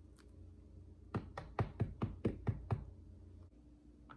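A wax-coated mesh strainer rapped about eight times in quick succession against the rim of a bowl, knocking off the skimmed gunk from melted beeswax: a quick run of sharp knocks starting about a second in.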